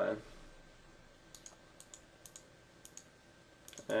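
Computer mouse clicking: a handful of light, irregular clicks spread over a few seconds, with a short cluster near the end.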